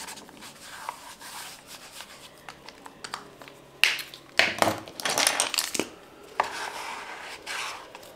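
Paint marker rubbing on sketchbook paper, broken by a sharp click and then a run of loud knocks and clatter from a plumber working in the background, with one more click a little later.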